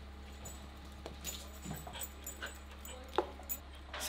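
Faint sounds from a Belgian Malinois: a few soft, short noises spread across a few seconds, over a steady low background hum.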